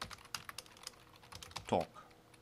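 Typing on a computer keyboard: a quick, uneven run of key clicks as a short phrase is typed.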